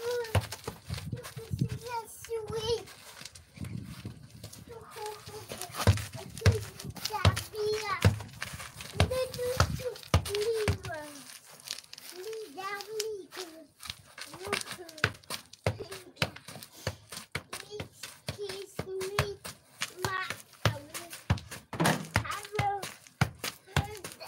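A toddler's high-pitched babbling and wordless vocalising, in short calls throughout, with frequent short knocks and thumps mixed in.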